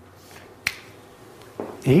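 A single short, sharp click about two-thirds of a second in, over quiet room tone; a man's voice starts up near the end.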